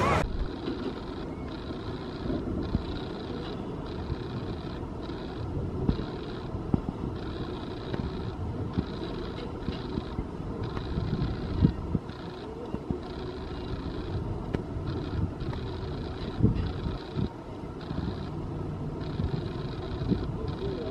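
Outdoor amusement-park ambience: a steady low rumble with scattered knocks and faint passing voices.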